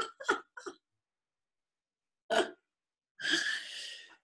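A person's laughter heard over a video call, trailing off in a few short bursts, then one short vocal burst a little past halfway and a breathy sound near the end, with dead silence between.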